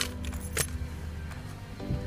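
A bunch of keys jingling and clicking as they are handled in a car, a few sharp clinks near the start, over background music and a low steady hum.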